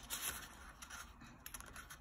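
Faint rustling and scraping of a sheet of paper being folded in half, a few short rustles as its edges are slid into line by hand.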